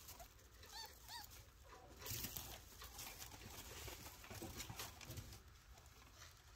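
Faint short squeaks from chinchilla kits, two quick chirps about a second in, among light rustling of the hay bedding.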